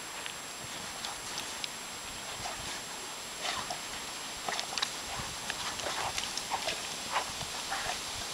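Great Danes bounding and digging in deep snow: irregular crunches and scuffs of their paws in the snow, coming thicker in the second half, over a steady background hiss.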